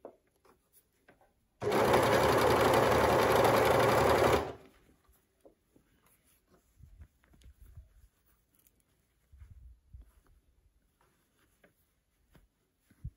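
Overlocker (serger) running at speed in one steady burst of about three seconds, stitching a ribbed neckband onto a t-shirt, then stopping. Afterwards there are only faint handling sounds as the fabric is readjusted under the presser foot.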